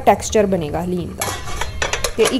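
A utensil clinking and scraping against the metal pressure cooker pot, a quick run of clatter in the second half.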